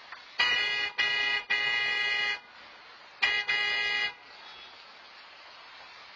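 Car horn honking five times: three blasts in quick succession, the third held longest, then two more after a short pause.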